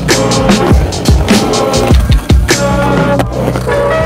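Skateboard wheels rolling on a concrete bowl, heard under an instrumental electronic beat with regular drum hits.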